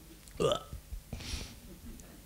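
A mostly quiet pause with one short vocal sound from a man about half a second in, then a faint breath.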